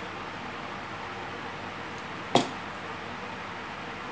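One sharp click from the telescoping pole of a selfie-stick tripod as its sections are twisted and pulled by hand, over a steady background hiss.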